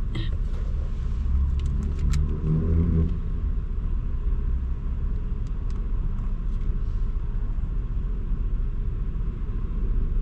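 Steady low rumble of an idling car heard from inside the cabin, with a few light clicks in the first two seconds.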